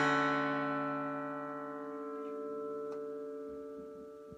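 Gibson J-45 Custom acoustic guitar's final strummed chord ringing out, fading slowly with no new strums: the song's closing chord left to sustain.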